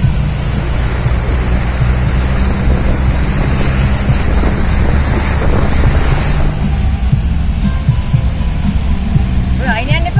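Jeep's Mitsubishi 4DR5 diesel engine running steadily under load, heard from inside the cab, with water rushing and splashing hard against the body as it ploughs through floodwater. The splashing eases off about six and a half seconds in, leaving the engine's rumble.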